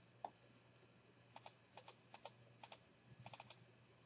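Computer mouse clicking: one click, a pause, then about a dozen quick clicks in short runs and pairs over two seconds. These are the clicks that place a polygon's corners and finish it with a double click.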